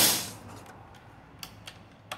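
A single shot from a regulated PCP air rifle fitted with a carbon suppressor, right at the start: a sharp report that dies away within about half a second. It is very quiet for a 100-joule rifle. A few faint handling clicks follow.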